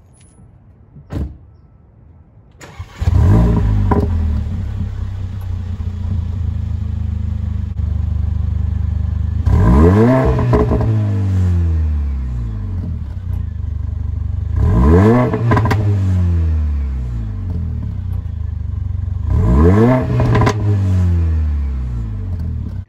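2016 Mercedes-AMG CLA 45's turbocharged four-cylinder on the stock exhaust, started up about three seconds in with a rev flare, then idling steadily. It is then revved three times, about five seconds apart, each rev rising and falling with short crackles around the peak.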